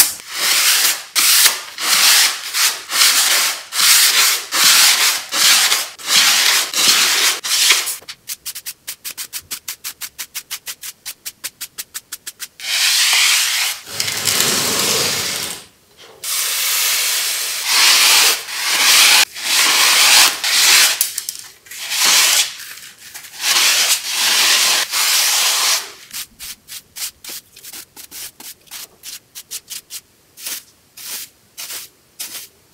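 A hand rubbing and swiping dust and debris off the white plastic case of an iMac G5: a series of dry rubbing strokes, each about a second long, with runs of quicker, shorter strokes in the middle and near the end.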